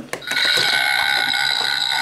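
Ugglys Pet Shop toy playset's electronic sound unit playing a steady, high electronic ringing tone like an alarm, starting about a third of a second in.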